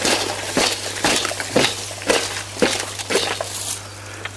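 Woody stems and roots of an old cayenne chilli bush cracking and snapping as it is wrenched out of the soil by hand, with rustling foliage: a string of sharp snaps about every half second.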